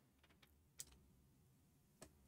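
Near silence: room tone with a few faint, short clicks, the clearest just under a second in.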